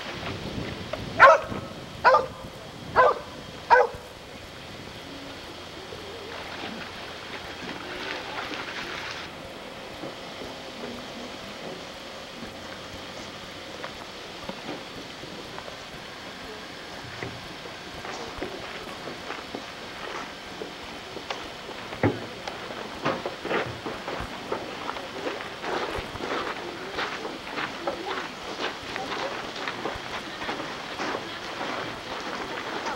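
A dog barking four times, about a second apart, followed by a steady outdoor rush with scattered light ticks and taps.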